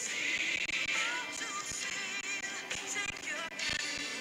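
A song sung with musical accompaniment, the voice gliding between held notes.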